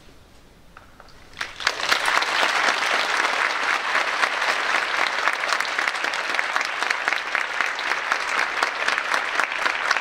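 Large audience applauding, beginning with a few scattered claps about a second and a half in and quickly swelling into full, steady applause.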